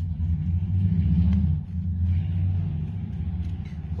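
A low rumble dominates, dipping briefly partway through, with faint snips of small scissors cutting paper.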